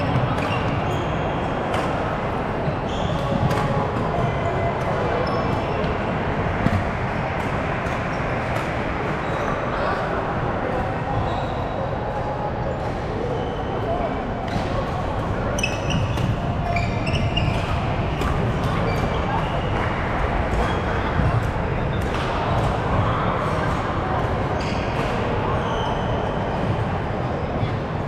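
Busy indoor badminton hall: a steady hubbub of many voices talking at once, with frequent sharp clicks and knocks of rackets striking shuttlecocks and shoes on the wooden courts scattered throughout.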